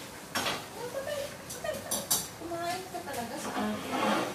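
Kitchen utensils knocking and clinking against cookware, a few sharp clinks about half a second in and again around the middle.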